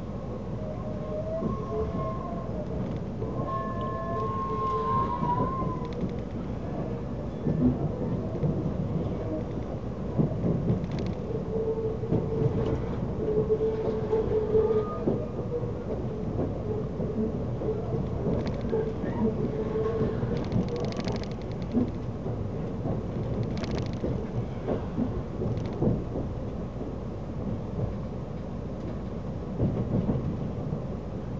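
Train running gear rumbling steadily, heard from inside a passenger car of a moving train, with short squealing tones coming and going in the first half and a few sharp knocks later.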